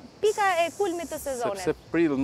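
A woman speaking, with a faint steady high hiss beneath her voice for about a second.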